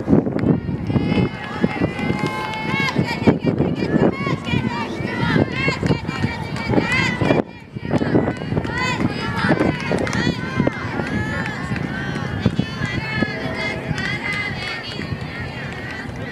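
Many high-pitched voices calling out and cheering over each other at a girls' fastpitch softball game, with no single voice clear; the sound dips briefly about seven and a half seconds in.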